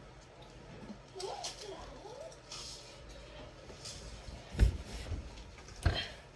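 Two dull thumps about a second apart near the end, from a child climbing onto a bed and pressing a patch against a bedroom wall. Faint voices are heard in the background earlier.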